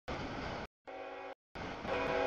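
Short chopped snippets of a freight train at a grade crossing, each cut off abruptly with silent gaps between. The first and last snippets are rumble and rail noise, and the middle one is a steady chord of several notes.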